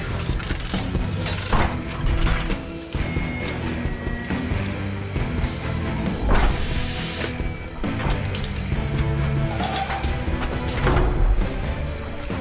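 Orchestral-rock film score over mechanical sound effects of robotic arms fitting armour plates: whirring servos and metal clanks, with several surges of sound a few seconds apart.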